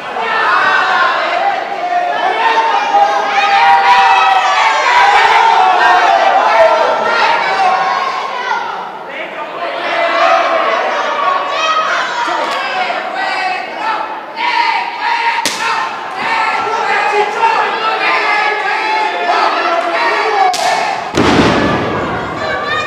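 Lucha libre crowd shouting throughout in a large hall, with a sharp smack of an open-hand chest chop (raquetazo) about two thirds of the way through and another near the end, followed by a heavy thud of a body hitting the ring mat.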